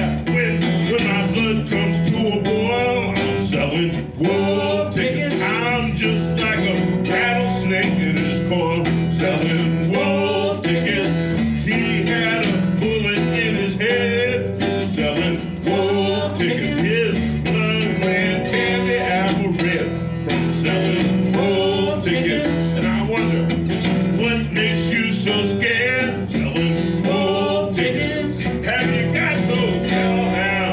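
Acoustic blues played live: a resonator guitar keeps a steady, rhythmic bass while a high, bending lead line wavers above it, with frequent sharp percussive hits throughout.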